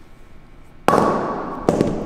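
A pair of 25-pound dumbbells set down on a concrete floor: two clanks, the first loud just under a second in and the second about 1.7 seconds in, each ringing and echoing in the large room.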